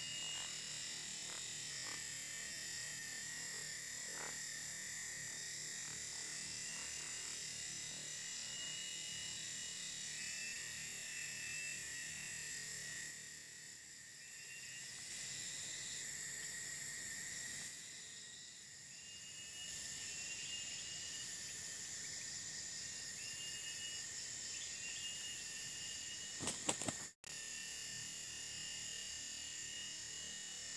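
Steady, high-pitched drone of a forest insect chorus, with a few short chirping calls over it. A couple of sharp clicks and a brief cut-out come near the end.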